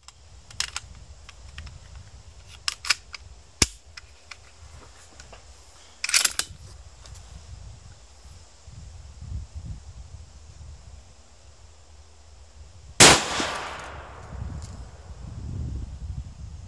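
Metallic clicks of a magazine being seated and the bolt being worked on an ATA ALR bolt-action rifle, then, about thirteen seconds in, a single .308 rifle shot, the loudest sound, with about a second of echo dying away after it.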